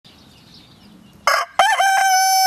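A rooster crowing: a short harsh first note about a second and a quarter in, then a long steady held note that begins near the end.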